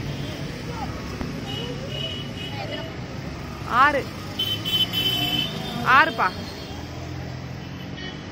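Roadside street noise: steady traffic rumble with background voices. Two short, loud sounds that rise in pitch stand out, about four and six seconds in.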